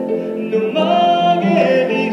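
A man singing a French chanson into a microphone over backing music, holding one long note near the middle.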